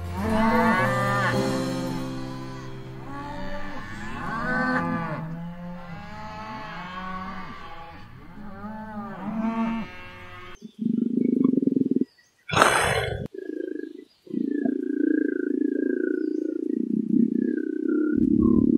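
Domestic cattle mooing, several long rise-and-fall calls overlapping one another. About ten seconds in the sound changes to a low, rough rumbling, broken by a short sharp burst of noise.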